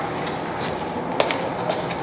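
Steady room noise with a faint low hum, broken by two short clicks a little over a second in.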